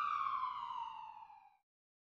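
A single pitched, siren-like tone with overtones, sliding slowly down in pitch and fading out about a second and a half in.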